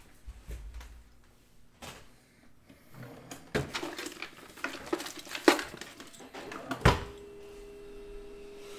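Clicks, knocks and rustling from items being handled on a desk, busiest in the second half with a couple of sharp clicks; a steady low tone comes in near the end.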